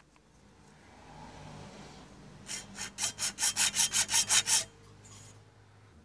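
A hand hacksaw cutting through a white plastic part. Soft, slow rasping gives way to about eleven quick strokes at roughly five a second, which stop about two-thirds of the way through.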